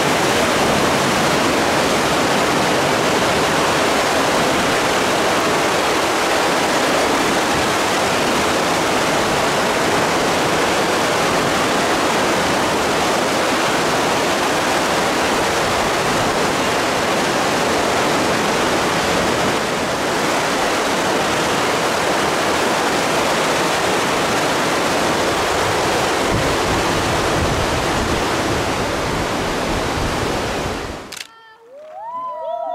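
Whitewater rapids rushing: a loud, steady, even noise of churning river water.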